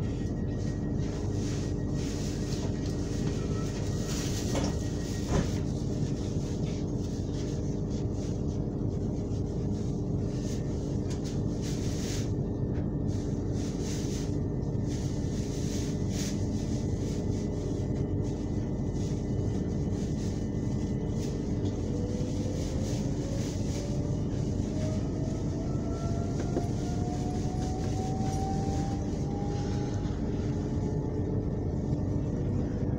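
Electric passenger train running, heard from inside the carriage: a steady rumble of wheels on track with a constant hum, and a whine that rises in pitch near the end.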